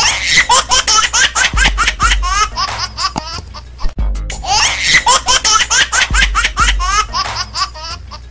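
Dubbed-in laugh track of high-pitched, rapid giggling, the same stretch of laughter repeating about every four seconds, over background music with a steady low bass.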